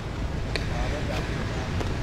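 Outdoor city ambience: a steady low rumble of distant traffic and wind on the microphone, with faint voices in the background.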